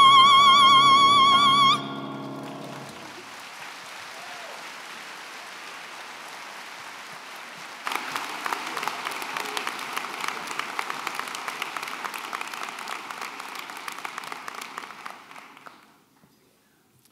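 A female soloist holds the final high note of an operatic song, with wide vibrato over a sustained accompaniment chord, and cuts off about two seconds in. After a few quieter seconds, audience applause breaks out about eight seconds in and dies away near the end.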